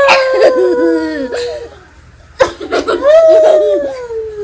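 A woman laughing hard in two long, high, drawn-out bursts. The second burst slides slowly down in pitch.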